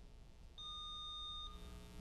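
Quiz-bowl buzzer system giving one steady electronic beep about a second long, starting about half a second in: the signal that a player has buzzed in to answer.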